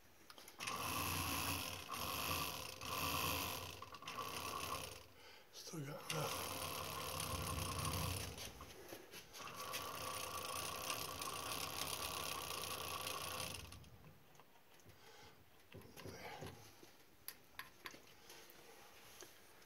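A Marquette distributor tester spinning a Hudson Jet distributor on its stand, a steady mechanical whine and whirr. It starts about half a second in, dips and picks up again with a short rising pitch around six seconds in, and stops about fourteen seconds in.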